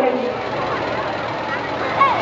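Steady outdoor background noise with faint distant voices.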